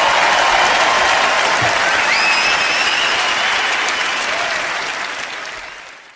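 Large concert audience applauding, with a single rising whistle about two seconds in; the applause fades out near the end.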